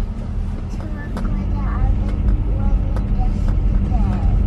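Steady low rumble of road and engine noise inside a moving car's cabin. A child's quiet voice murmurs faintly through the middle of it.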